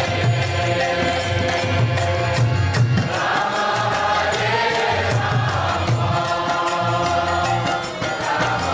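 Kirtan: voices chanting a mantra together over a sustained harmonium, with a steady rhythm of small hand cymbals and a pulsing low beat underneath.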